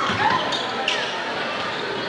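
A basketball being dribbled on a hardwood gym floor, among the general noise of a high school game: player movement and crowd voices echoing in the hall.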